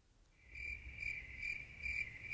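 Cricket-chirp sound effect, starting about half a second in: short, evenly spaced chirps a little over two a second. It is the stock 'crickets' gag for an awkward silence with no reply.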